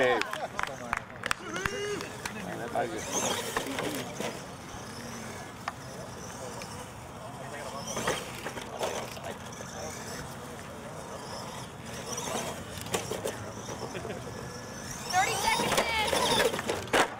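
Radio-controlled monster truck driving and jumping on turf, with its motor and tyres running and sharp knocks as it lands on wooden ramps and plastic crush-car bodies, the clearest about halfway through and again later on. People talk in the background, loudest near the end.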